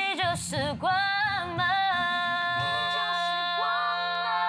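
Young women's voices singing a slow pop line in harmony, the melody settling into a long note held from about halfway through, with a second voice moving in underneath it near the end.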